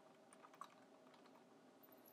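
Faint computer keyboard typing: a few soft, scattered key clicks over near silence.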